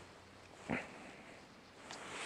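Domestic cat sneezing once: a short, soft sneeze about two-thirds of a second in, one of a run of repeated sneezes.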